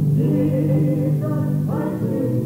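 Gospel song sung by several voices, the notes held and wavering with vibrato.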